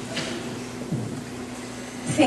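Steady room hum with faint rustling and a couple of soft knocks: handling noise as a handheld microphone is picked up and passed between people.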